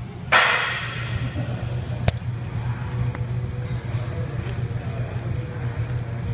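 Weight-room background: a steady low hum, a sudden loud clatter about a third of a second in that dies away over half a second, and one sharp click about two seconds in.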